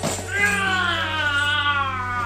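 A young child's long, high-pitched wavering squeal that begins about half a second in and is held on, over a steady low hum.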